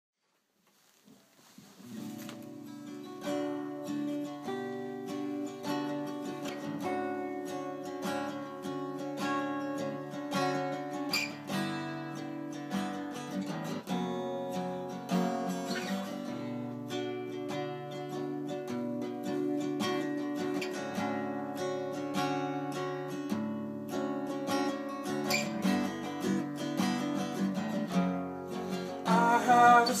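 Two acoustic guitars playing an instrumental intro together, coming in about a second in. A voice starts singing near the end.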